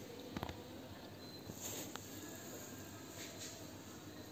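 Quiet kitchen room tone with a couple of faint clicks about half a second in.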